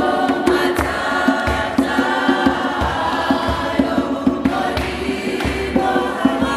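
A congregation singing a gospel hymn together in many voices, with a hand drum beating a steady rhythm under the singing.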